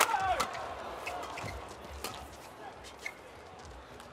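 Badminton racquets striking a feathered shuttlecock in a fast doubles rally: sharp hits about twice a second, the loudest right at the start, over the steady murmur of an arena crowd.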